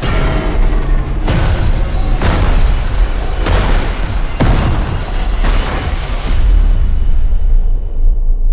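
Film-trailer music mixed with a string of heavy explosion booms, about one a second, over a deep, sustained rumble. The booms stop about six and a half seconds in, leaving the low rumble.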